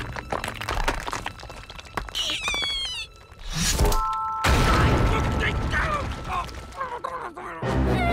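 Cartoon sound effects over music: a rapid run of clicks and clatter with a falling whistle, then a blast about four seconds in, followed by a couple of seconds of loud rumbling noise.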